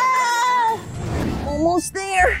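A girl's high-pitched, wavering squeal of laughter, fading about a second in, then a short whoosh and a few rising squeaky glides near the end.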